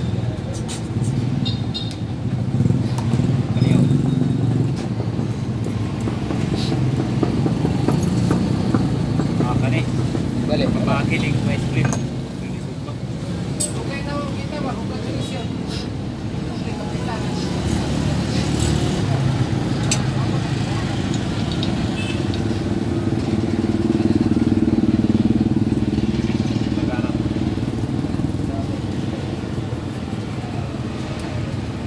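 An engine running steadily, with light clicks from pliers and wires being handled.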